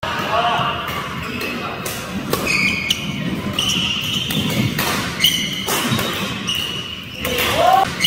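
Badminton doubles rally: a quick, irregular series of sharp racket-on-shuttlecock hits echoing in a large hall, with short high squeaks from court shoes between the strokes.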